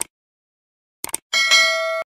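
Sound-effect mouse clicks, one and then a quick double click about a second in, followed by a bright notification-bell ding that rings with several overtones and cuts off suddenly.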